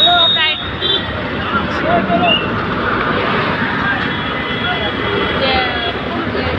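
Busy road traffic: engines of buses, trucks and motorcycles running and passing close by, with people's voices over it, loudest in the first half-second. A thin steady high tone sounds over the traffic in the last couple of seconds.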